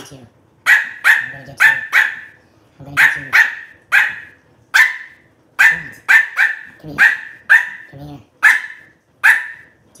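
Small white dog barking: a run of short, sharp barks, often two in quick succession. These are demand barks aimed at the person holding out a cookie.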